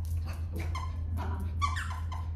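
A small dog whining in short, high cries three or four times, over a steady low hum.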